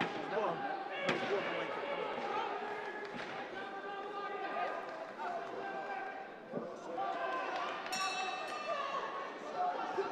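Many overlapping voices of an arena crowd, chattering and calling out in a large hall.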